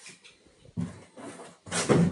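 Rummaging through stock in a cramped storeroom: irregular rustling and knocking of items being moved and handled, with the loudest knock near the end.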